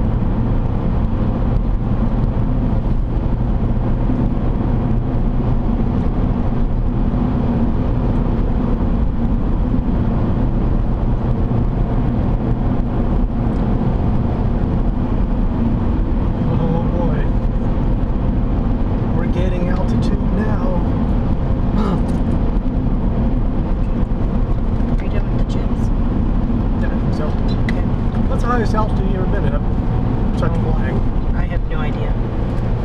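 Steady road and engine noise of a car cruising on a highway, heard from inside the cabin. Faint talk comes and goes in the background in the second half.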